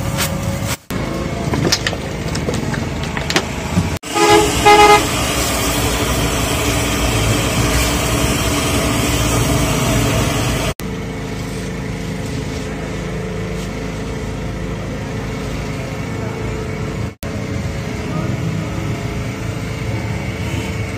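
Steady busy street noise with a vehicle horn tooting several short times about four seconds in. The sound drops out briefly at a few edit cuts.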